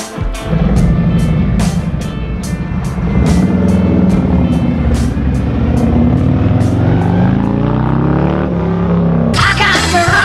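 Harley-Davidson Street Glide's V-twin engine pulling away and accelerating, its pitch climbing and dropping back several times as it runs up through the gears, over guitar music. Near the end the engine gives way to music with singing.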